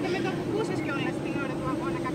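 Faint background voices, quieter than the main speaker, over a steady low hum.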